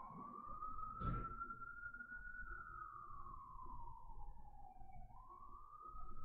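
Faint emergency-vehicle siren in a slow wail: a single tone rises, falls slowly over a few seconds, then swings back up about five seconds in.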